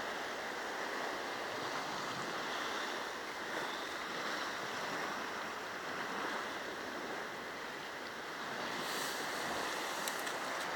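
Sea surf: small waves washing at the water's edge, a steady, even rush.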